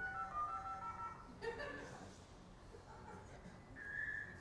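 Dial-up modem connecting, played back faintly: a quick run of dialing tones stepping in pitch, then a steady high tone near the end.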